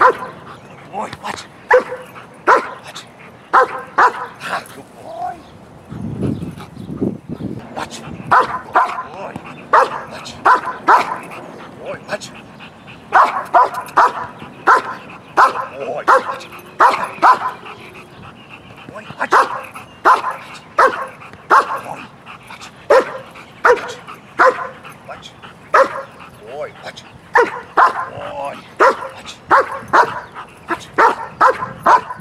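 Large dog barking in runs of short, sharp barks, with a break of a few seconds about five seconds in. It is barking on the handler's "watch" command while being held in place.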